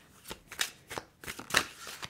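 A deck of cards being shuffled by hand: a quick run of papery swishes and flicks, loudest about one and a half seconds in.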